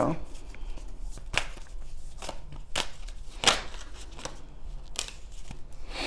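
Tarot cards being handled and laid out: about five short, soft card snaps and flicks spaced a second or so apart over a quiet room background.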